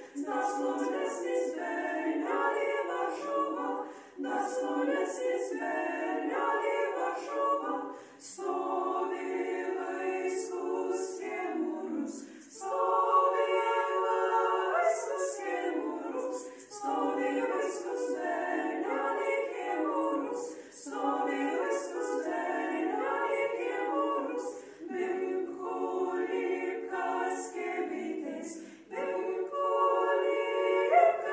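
A small ensemble of women singing a Lithuanian folk song a cappella, in phrases of about four seconds with brief breaths between them.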